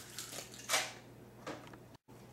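A raw egg being pulled apart by hand over a metal baking pan: eggshell crackling and egg dropping into the pan, with two short sounds about three-quarters of a second and a second and a half in.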